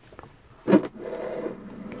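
Handling noise on a cardboard product box: a sudden rustle about two-thirds of a second in, then a steady rubbing sound.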